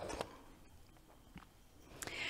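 Near silence: quiet room tone, with one faint small tap about one and a half seconds in as a small wooden salt box is handled.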